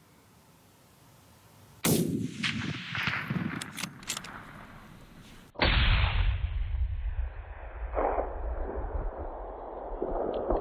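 A single rifle shot about two seconds in, a sharp crack whose echo rolls away over the next few seconds. Halfway through it gives way abruptly to a steady loud low rumble.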